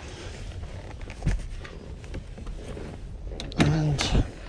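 A child car seat being pulled off a Mazda5's second-row captain's chair: small clicks and rattles of plastic and buckle hardware, with one thump about a second in.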